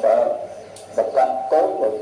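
A Buddhist monk's voice through a microphone and loudspeaker, delivered in a sing-song, chanted way with held notes, a short pause in the middle.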